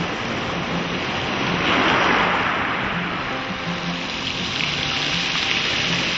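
Sea waves washing up onto a shingle beach, a steady rush that swells to its loudest about two seconds in, with soft background music underneath.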